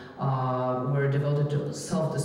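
Speech: a voice speaking in drawn-out sounds on a nearly steady pitch.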